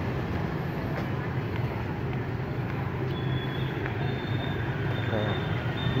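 City street traffic: a steady hum of motorbike and car engines passing on the road, with a faint thin high whine joining about halfway through.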